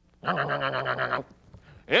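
A man's drawn-out vocal cry on one steady pitch, trembling rapidly, lasting about a second. It is a comic caveman-style call.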